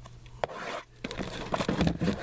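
A shrink-wrapped cardboard trading-card box being handled and turned over, its plastic wrap crinkling and scraping in an irregular run of short crackles that grows busier in the second half.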